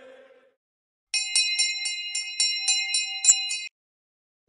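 Notification-bell sound effect: a small bell ringing in rapid, evenly spaced strikes, about four a second, starting about a second in and cutting off abruptly near the end.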